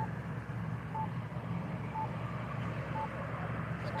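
A short, high electronic beep repeating about once a second over a steady low rumble of idling vehicles.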